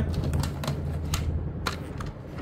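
A few sharp clicks and knocks of hard plastic vacuum-cleaner attachments being handled and lifted out of a cardboard box, over a steady low hum.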